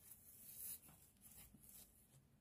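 Near silence with a faint rustle of sequined fabric being handled, in two brief soft swishes.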